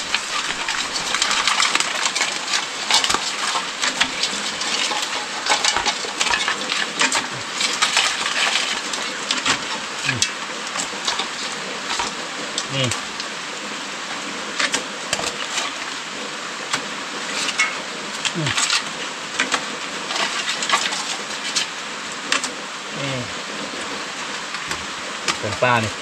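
Steady rain falling on a corrugated metal roof, with many scattered sharp clicks and light knocks on top.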